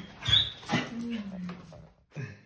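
A dog whimpering in greeting while being petted, with a short high squeal about a third of a second in, alongside a person's soft voice.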